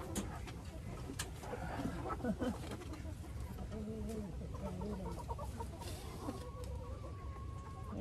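Backyard hens clucking, with short scattered calls and one longer held call near the end. A couple of sharp clicks sound near the start.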